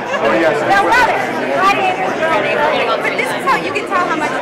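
Overlapping voices: several people talking at once in a busy chatter.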